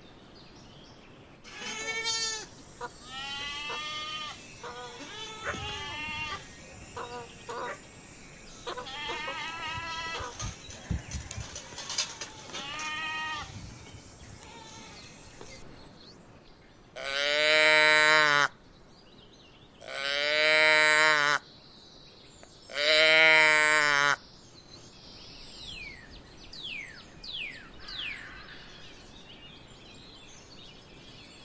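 A young calf bawling three times, each call loud and about a second and a half long, after a run of shorter, quieter animal calls. Faint falling chirps follow near the end.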